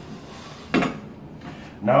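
A single short clack of tile on tile, about a second in, as stacked thin-set triangular tile pieces for a corner shower shelf are squeezed together.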